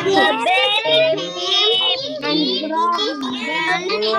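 Several young children reading lines aloud in a chanting chorus over a video call, their voices overlapping out of step with one another.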